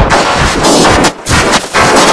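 Extremely loud, overdriven and clipped music, layered copies of a song piled into a harsh crackling noise that comes in rapid bursts, dipping briefly about a second in and again just after.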